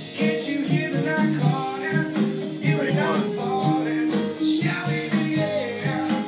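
A live band playing a song: a male lead singer singing over guitar and a steady beat.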